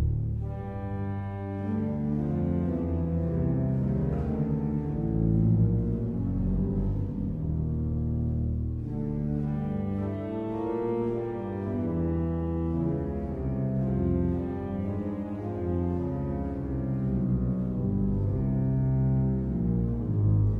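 Eskil Lundén pipe organ (1917) sounding its pedal Violon 16' and 8' stops: a slow line of held low notes with a strong, very stringy tone like a double bass.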